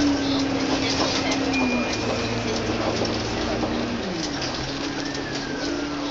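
Bus engine and drivetrain drone heard from inside the bus, a steady low hum whose pitch steps down and then glides lower about four seconds in as the bus changes speed, over street and cabin noise. A brief high tone sounds about two seconds in.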